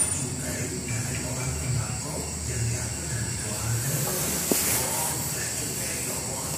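Light metal handling of a motorcycle rear shock absorber's spring and lower mount, with one faint click about four and a half seconds in, over a steady hiss and a low murmur.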